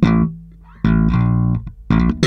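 Electric bass guitar, a Fender Jazz Bass, playing a slap-style funk-rock fill. A note at the start dies away, a longer note sounds about a second in, and another is struck just before the end.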